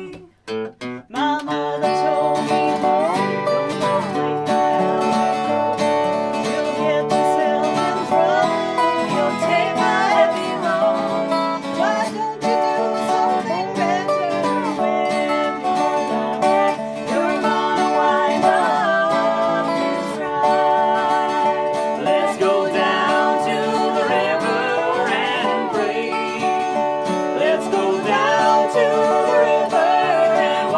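Live acoustic Americana band in a traditional American folk style: a lap-played resonator guitar with a slide and a strummed acoustic guitar come in about a second in after a brief pause, with singing over them.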